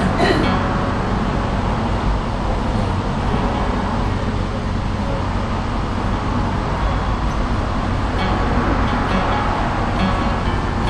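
Steady low rumble with a hum underneath, the stage floor rumbling, under faint voices.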